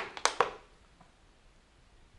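Footsteps crunching on fallen plaster and rubble: a few sharp crunches in the first half-second.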